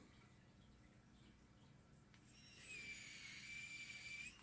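Near silence, then a little past halfway a faint, steady high-pitched whine from the SQ-ES126 smart screwdriver's small motor and gearbox running in its fourth torque gear. It keeps running without stalling while the bit is gripped by hand.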